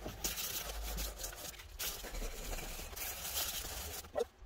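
220-grit sandpaper rubbed by hand over the painted metal 5.0 engine badge plate of a 1990 Mustang: a continuous scratchy rasp that swells and eases with each stroke.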